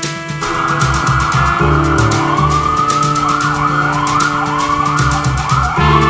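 Emergency vehicle siren: a steady wail from about half a second in, switching about two seconds in to fast rising sweeps, about two a second, which stop just before the end. Background music with a beat plays underneath.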